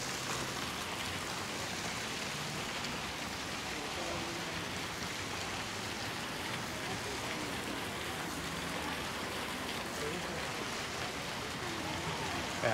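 Small fountain jets splashing into a shallow reflecting pool: a steady, even splashing.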